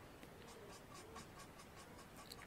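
Faint, quick scratching strokes of a marker tip colouring on cardstock, about seven strokes a second, starting about half a second in.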